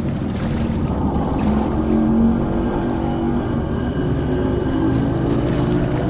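Steady low rumble of room and amplifier noise, with a faint voice sounding quietly in the middle.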